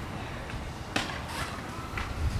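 One sharp slap about a second in, as a push-up hits the textured pavement, over a steady low outdoor rumble.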